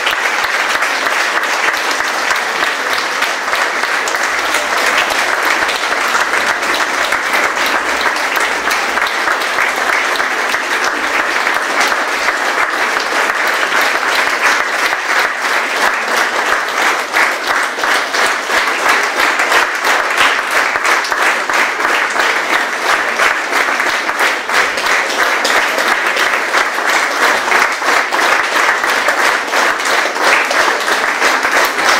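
Audience applauding, a loud steady mass of hand claps that carries on without a break.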